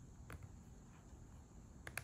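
Near silence: room tone with a few faint, short clicks, one about a third of a second in and a couple near the end.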